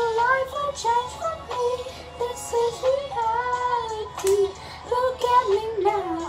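A young woman singing a melody with no clear words, her voice sliding up and down between notes in long phrases.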